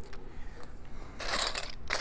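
Loose plastic building bricks clattering and scraping in a metal bowl as a hand rummages through them, with a louder rattling burst a little past halfway and a few light clicks around it.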